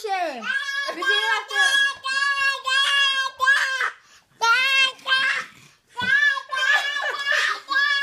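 A toddler's high voice calling out and sing-shouting in a string of short calls, with two short pauses near the middle.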